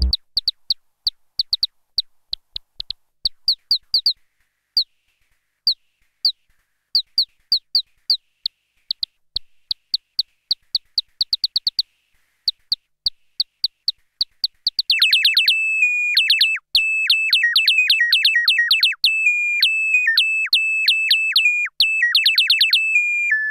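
Alisa 1377 Soviet synthesizer sounding short, high-pitched blips, each a quick falling chirp, at an irregular rate of several a second. About fifteen seconds in it changes to a louder, steady high tone overlaid with rapid repeated stabs that step up and down in pitch.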